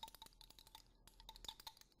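Faint, rapid clinking of a thin stirring rod against a small container as an oil, water and detergent mixture is stirred into a milky emulsion. The clicks come many times a second, each with a brief ring.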